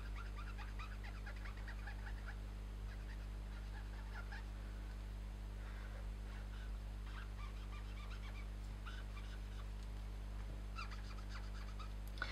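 Felt-tip marker squeaking on paper in quick short shading strokes, coming in several spells with brief pauses between. A steady low hum runs underneath.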